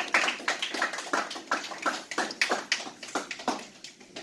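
A small group applauding, many hands clapping unevenly, dying away just before the end.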